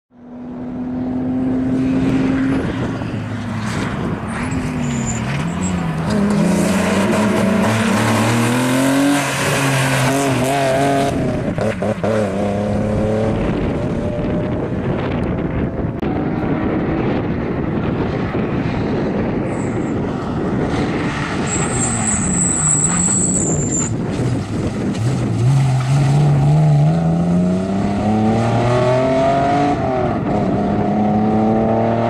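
BMW E36 engine driven hard on a sprint course, its revs climbing and dropping again and again as the car accelerates, lifts and changes gear. A brief high squeal comes a little past two-thirds of the way through.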